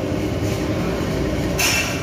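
Steady low rumbling background noise of a busy restaurant, with a brief hiss near the end.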